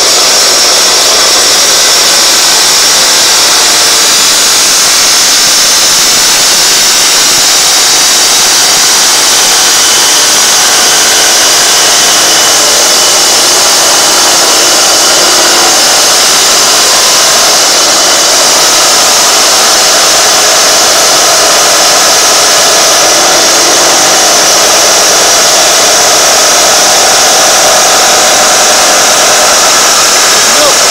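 Electric bench saw with a circular blade running steadily while it cuts through a large horse conch shell, a continuous high-pitched grinding hiss.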